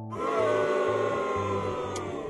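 A noisy sound effect whose several pitches slowly fall over about two and a half seconds, over light background music with a low repeating bass line.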